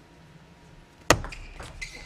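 Table tennis ball struck with a sharp crack about a second in, followed by a few fainter ticks of the ball bouncing, during a serve-and-receive rally that ends in a service point.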